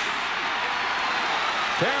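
Stadium crowd cheering steadily after a long completed pass, heard through a television broadcast.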